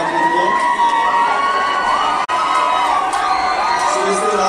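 A crowd of young people cheering and shouting, with long, high held shouts that slide in pitch. The sound cuts out for an instant a little past halfway.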